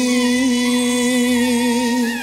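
Male vocalist holding one long sung note with a slight waver, over live band accompaniment.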